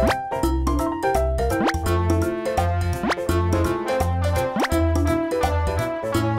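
Bouncy children's background music with a steady beat, and a quick rising 'boing'-like glide about every second and a half.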